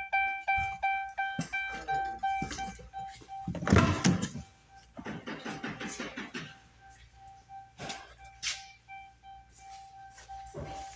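Dodge Ram 1500's key-in-ignition / lights-on warning chime dinging repeatedly, about two dings a second, with a louder door clunk about four seconds in and handling noises.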